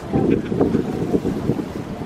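Wind buffeting the microphone: a loud, gusty low rumble that eases off near the end.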